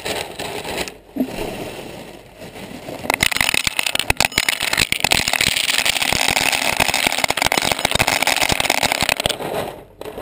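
A plastic bag rustling, then a stream of small hard pieces poured from it onto the camera's housing, making a dense rattling patter from about three seconds in until just after nine seconds.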